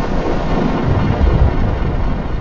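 Loud, harsh distorted electronic audio from a sound run through stacked pitch-shift and distortion effects, heard as a dense noisy rumble with a heavy low end and no clear tune.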